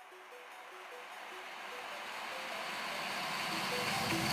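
Future bass track intro made in FL Studio Mobile: a hissing noise riser grows steadily louder under a soft, repeating synth melody, building toward the drop.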